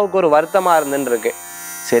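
A man speaking Tamil, telling a story in a steady voice, with a short pause about two-thirds of the way through.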